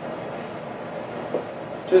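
Steady, even background hiss of room noise, with a faint short sound about a second and a half in; a man's voice starts again right at the end.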